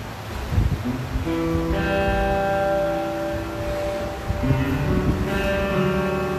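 Church worship band playing an instrumental introduction on guitar and other instruments: held chords come in about a second in and change to a new chord about four seconds in.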